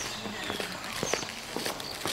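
Footsteps and a few short sharp knocks and clicks of people moving about a crowded outdoor queue, with faint voices in the background.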